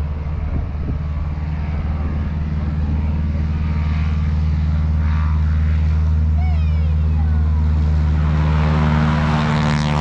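Piston aircraft engine and propeller running steadily, a deep droning hum that grows louder and fuller over the last couple of seconds.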